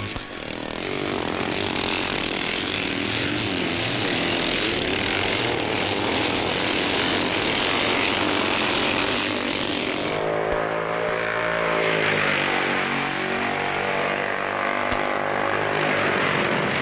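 A pack of racing motorcycles at full throttle. For about the first ten seconds many engines blend into one dense blare. After that single engines stand out more clearly, their pitch rising and falling as they pass.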